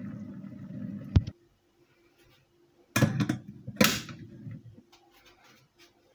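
A low steady hum that stops abruptly with a click about a second in. Then, about three and four seconds in, two sharp knocks of a glass jar and a mesh strainer being set down on the kitchen counter, the second the louder.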